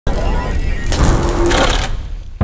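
Noisy, mechanical-sounding sound effect of a channel logo ident. It starts abruptly with a faint rising whine and turns harsher and brighter about a second in.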